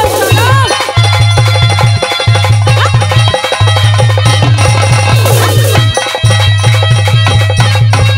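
Instrumental interlude of Haryanvi ragni folk music: a dholak drum plays a fast, driving rhythm with a deep bass thump under steady held melody notes.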